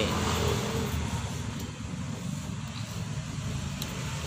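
Low, steady rumble of a motor vehicle engine running.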